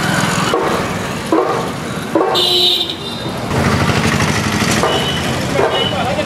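Busy street noise around a procession, with a vehicle horn tooting briefly about two and a half seconds in.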